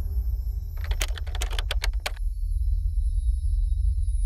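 Logo outro music: a deep, steady low drone under a quick run of about nine typing-like clicks between one and two seconds in, with thin high tones held above.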